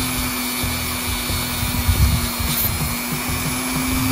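Dremel rotary tool spinning a small wire brush wheel against a slot car chassis bottom plate, a steady motor whine with the bristles scrubbing the metal to clean off oxidation.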